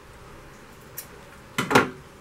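Scissors cutting off excess strap fabric and thread: a faint snip about a second in, then a louder short snip near the end.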